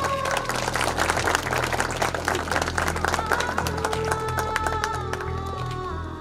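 Audience clapping over background music with held melody notes; the clapping is thickest in the first three seconds and thins out toward the end.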